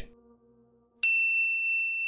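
A single bright bell-like ding about a second in, ringing steadily for about a second and then cutting off abruptly. It is the notification-bell sound effect of a YouTube subscribe-button animation.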